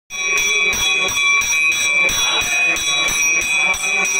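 Temple bells ringing, struck over and over at about three strikes a second, their high ringing tones held steadily between strikes.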